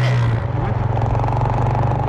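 Motorcycle engine running with a steady low note as the bike rides along a street.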